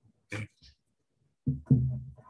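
A person's voice in a meeting room: a short 'okay', then about a second and a half in a louder, drawn-out wordless vocal sound held on one pitch for about half a second.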